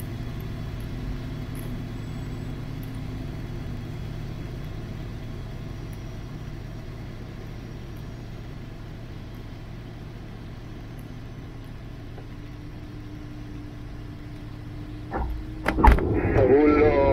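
Steady low rumble of airflow and the main wheel inside an LS8-e Neo sailplane's cockpit as it lands and rolls out on a wet runway, slowly fading as the glider slows. A faint steady hum joins about twelve seconds in, and a couple of knocks come just before the end.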